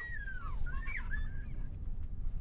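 A bird calling: a thin whistled note sliding down, then a few short notes that rise and fall, over a low rumble of wind on the microphone.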